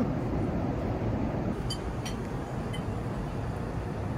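Steady in-flight cabin noise of an airliner: the even, low rumble of engines and airflow, with a couple of faint light clicks about two seconds in.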